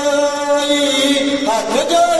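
Men of a kavishri jatha singing Punjabi kavishri without instruments, holding a long chanted note that moves to a new pitch about one and a half seconds in.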